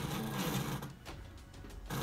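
Stepper motor running fast through a 3D-printed compound planetary gearbox: a whirring gear noise that drops away about a second in and starts again near the end.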